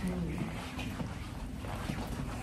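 Steady low rumbling noise with faint rustling and a few light ticks: handling and air noise on a handheld phone's microphone while walking.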